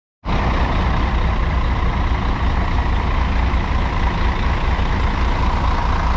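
Intercity coach's diesel engine idling steadily, a loud, even sound with a deep low rumble.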